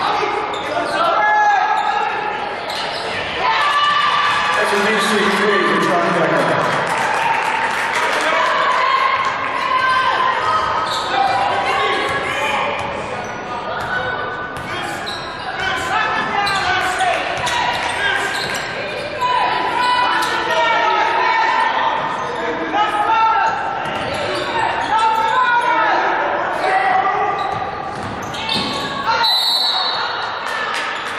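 Basketball game sound in a gymnasium: a ball dribbling on the hardwood court while players and spectators call out, the voices echoing in the hall.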